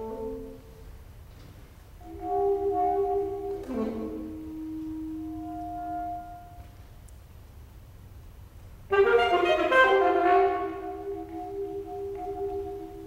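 Solo alto saxophone playing a few separate held notes, then a quieter pause, then a sudden loud, bright note about nine seconds in that is held on.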